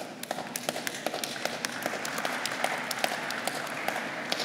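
Audience applauding: scattered claps at first, filling out into steadier applause.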